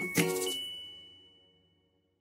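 End of a short outro music jingle: one last struck note, then a single high bell-like ding that rings out and fades to silence within about a second.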